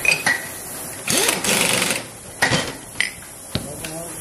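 Handheld power drill whirring for about a second as it spins up on a motorcycle front fork tube. Sharp metal clinks of steel tubes and rods being handled come before and after it.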